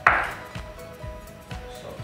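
Kitchen knife chopping vegetables on a wooden cutting board: one sharp knock at the start, then lighter, regular taps, over quiet background music.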